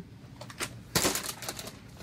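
Crinkling of a plastic snack bag as it is grabbed and lifted, in short crackles with the loudest about a second in.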